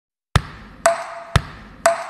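Ping-pong ball struck against a rubber-faced table-tennis paddle in a steady beat: four sharp hits about two per second. Every other hit is a duller knock, and the ones between give a short, higher ringing ping.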